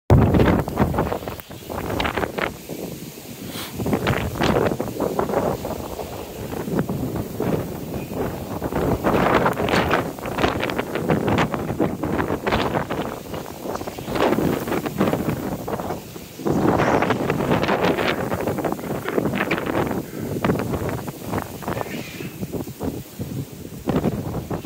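Wind buffeting the microphone in uneven gusts, a rough rushing noise that swells and drops every second or two.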